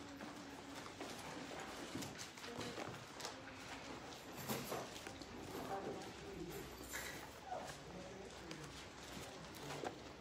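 Scattered light clicks and knocks from someone handling things at a lectern, with faint murmured voices in the room.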